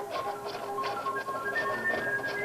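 Recorder music playing from a record, a melody of held notes that step up and down, with a quick run of light ticks several times a second over it.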